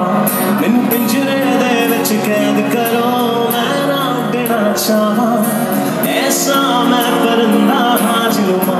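Live music played through a concert sound system: a man singing over an acoustic guitar.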